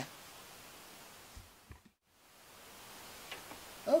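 Faint room tone and hiss with a few soft, small clicks, broken about halfway through by a brief drop to complete silence at an edit.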